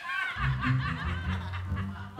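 Laughter over background music, with a low bass line coming in about half a second in.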